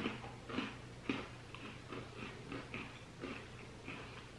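Close-up chewing of crisp, firm butter cookies: faint, irregular crunches, roughly two to three a second.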